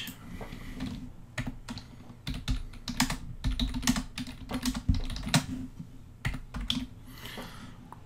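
Typing on a computer keyboard: a run of uneven keystroke clicks with short pauses between them.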